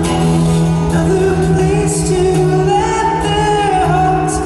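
A man singing a ballad live with long held notes, accompanied by his own acoustic guitar and amplified through an arena sound system.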